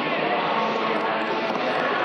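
Steady arena ambience: crowd murmur with a skateboard's wheels rolling on a wooden vert ramp.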